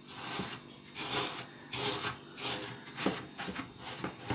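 A hand rubbing and kneading dry crushed biscuit crumbs with margarine and chopped peanuts in a plate: a gritty rustle that comes in strokes about once or twice a second.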